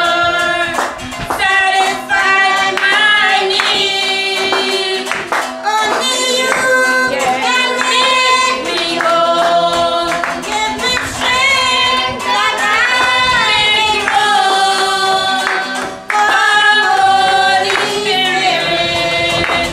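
Women singing a Christian worship song together, with hand clapping.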